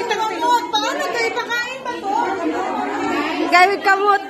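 Overlapping chatter of several people talking at once, with no one voice standing out clearly.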